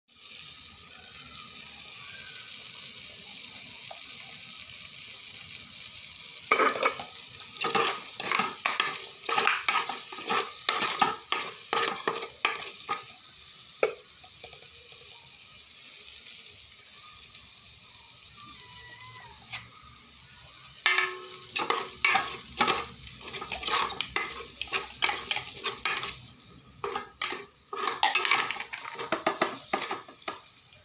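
Chopped onion and tomato sizzling steadily in oil in a metal rice cooker pot, with a steel spoon scraping and clinking against the pot in two long spells of stirring, the first starting about six seconds in and the second a little past the middle.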